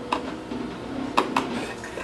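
A hand screwdriver turning a screw into a corner of a wooden box, with three small sharp metallic clicks: one just after the start and two close together a little past the middle.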